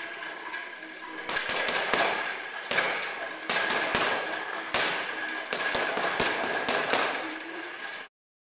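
Boxing gloves striking a hanging punching bag in a series of irregular sharp punches, often landing in quick pairs.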